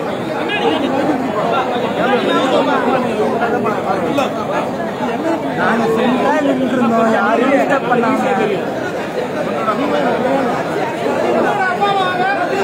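Crowd chatter: many people talking over one another at once, a steady hubbub of overlapping voices.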